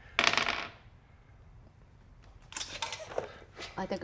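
A short clatter of dice, about half a second long, just after the start: a player rolling two d20s for a persuasion check with advantage.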